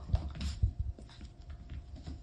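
A golden retriever moving about on a hardwood floor: a few soft thumps and clicks in the first second, then quieter rustling.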